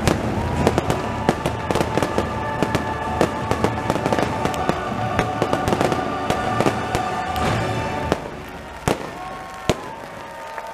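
Fireworks finale: rapid cracks and bangs of bursting shells over show music with long held notes. The music and the firing die down about eight seconds in, leaving two last loud pops near the end.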